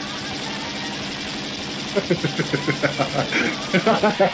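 Cartoon gunshot sound effects fired over and over from a handgun. For about two seconds they run together into a continuous rattling buzz, then they break into separate shots about five a second.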